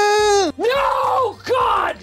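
A man's voice holding a loud, strained high sung note on one steady pitch, a mock demonstration of straining up for a high note with the chin lifted; it cuts off about half a second in. Two loud yelled cries follow, each rising and falling in pitch.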